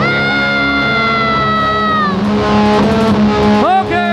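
Electric guitar feedback through the amp: a high sustained whine that sags in pitch about two seconds in, then short rising squeals near the end, over a steady low amp hum.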